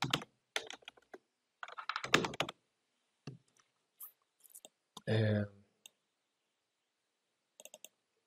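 Computer keyboard typing in short bursts of key clicks, with a few scattered single clicks later on. A brief vocal sound is heard about five seconds in.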